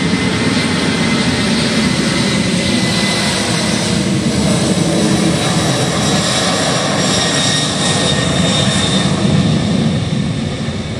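Boeing 747 freighter's four jet engines at takeoff power as it rolls down the runway: a loud, steady jet roar with a high whine that grows stronger in the second half.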